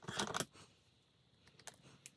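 Crisp rustling of a strip of collage paper being picked up and handled: a short crackly burst in the first half-second, then a few faint ticks near the end.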